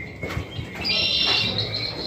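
A high-pitched, bird-like call from the maze's jungle-themed soundtrack: a thin whistle at the start, then a longer high call from about a second in that fades toward the end.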